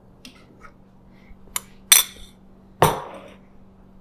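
A small ceramic bowl clinking a few times against a stainless-steel food-processor bowl as roasted squash and garlic are tipped in. The loudest clink comes about two seconds in, and a knock with a short ring near three seconds in sounds like the dish being set down on the counter.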